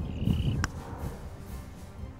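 A single sharp click about half a second in: a putter striking a golf ball on a putt. Low wind rumble and faint background music sit under it.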